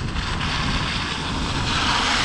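Wind rumbling on the microphone of a moving bike, with the hiss of a car's tyres on the wet, slushy road growing louder near the end as the car passes close by.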